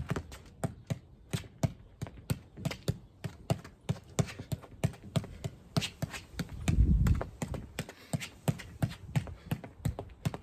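Football keepy-ups: a foot kicking a Mitre football again and again, sharp thuds about three a second at an even pace. A brief low rumble comes about seven seconds in.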